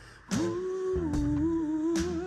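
Male R&B singer holding a long wordless note into a handheld microphone over backing music, after a brief pause at the start. The note steps down in pitch about a second in and starts to waver near the end.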